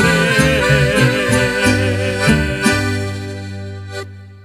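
Piano accordion and two acoustic guitars playing the instrumental close of a song: the accordion carries the melody over plucked guitar bass notes, then the trio lands on a final chord about three seconds in that is held and fades away.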